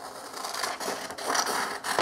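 Pencil scratching across a sheet of paper as a line is drawn, the scratchy sound growing louder after the first second.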